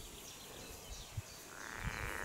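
Quiet outdoor ambience with a few faint low thuds and one short animal call about a second and a half in.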